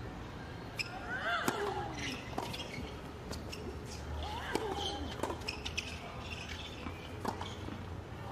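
Doubles tennis rally on a hard court: a string of sharp racket strikes and ball bounces, irregularly spaced, with a few short cries from the players between them.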